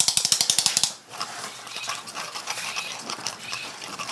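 A rapid run of light, sharp clicks for about the first second, then quieter steady background noise.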